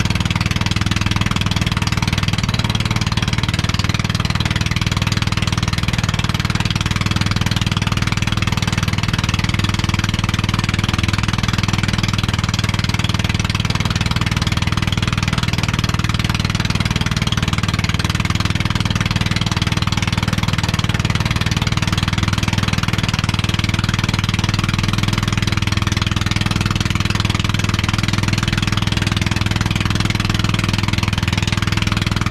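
Small outrigger fishing boat's engine running steadily while the boat is underway, a constant low hum with the hiss of water and wind along the hull.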